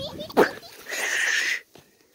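A person laughing: a short squeal that falls steeply in pitch, then a breathy, hissing burst of about half a second that stops abruptly.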